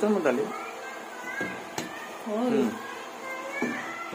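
Three short wordless, meow-like calls, each gliding up and down in pitch, with a single sharp click between them.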